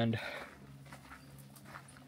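Faint sipping of water through a hydration pack's drinking tube and bite valve, following a single spoken word at the start.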